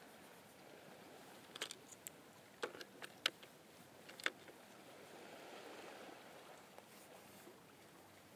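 Paintbrush working oil paint onto a painting panel: a handful of short, light taps and clicks in the first half, then a soft scrubbing brush stroke, over a faint steady background hiss.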